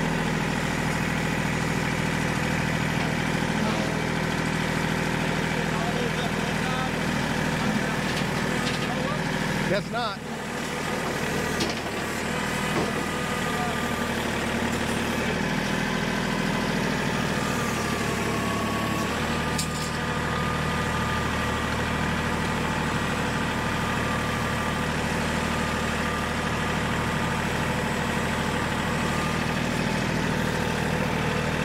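Orange compact tractor with a front loader, its engine running steadily, with a brief dip about ten seconds in and a change in engine note partway through.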